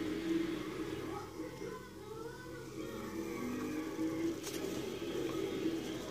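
Faint background voices and music, wavering in pitch, with a single light click about four and a half seconds in.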